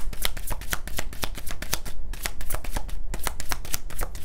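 A tarot deck being shuffled by hand: a quick, uneven run of short card snaps and riffles, several a second.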